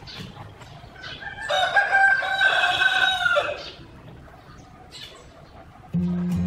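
A rooster crowing once, a long call of about two seconds near the middle, with a few short clucks around it.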